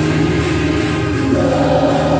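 Gospel music: a choir singing long held notes over instrumental accompaniment.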